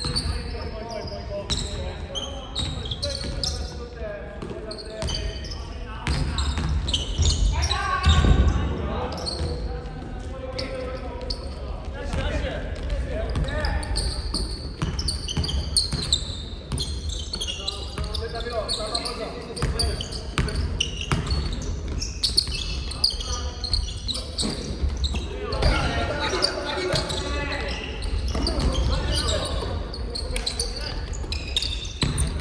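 Basketball game in a large gym hall: a ball bouncing on the hardwood court, sneakers squeaking and players calling out, all echoing in the big room.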